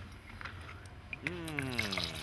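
Low kitchen room noise with a few faint clicks, then a person's voice starts a little past halfway.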